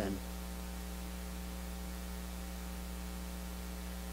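Steady electrical mains hum in the recording or sound system: a low, unchanging buzz with a ladder of overtones.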